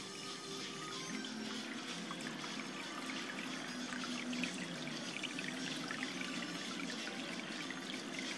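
Steady water trickling and splashing at the surface of a reef aquarium as its sump circulation runs, with music playing in the background.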